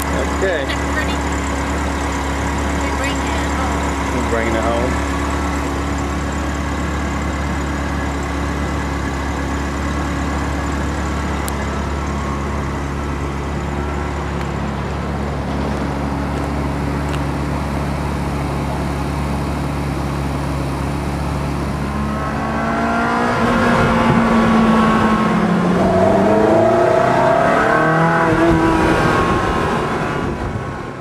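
Ferrari 360 Spider's V8 engine idling steadily, then revved up and down several times over the last seven seconds or so.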